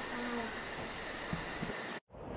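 Rainforest ambience of insects chirping: a steady high buzz with a fast pulsing trill above it, about six pulses a second, that cuts off suddenly at the end.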